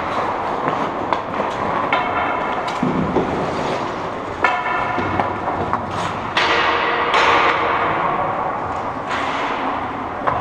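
Ice hockey play in an indoor rink: a steady wash of skate blades scraping the ice, broken by scattered knocks of sticks and puck and a few short higher scraping squeals.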